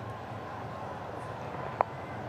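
Steady stadium crowd ambience, with a single short knock near the end as the cricket bat meets the ball.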